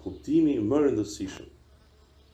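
A man's voice speaking for about a second, then a pause over a faint low hum.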